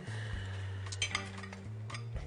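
A few light clinks of a metal fork against a ceramic plate as food is picked up from it, two close together about a second in and another near the end.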